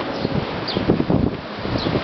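Strong, blustery wind buffeting the microphone in irregular gusts, with a couple of faint high chirps.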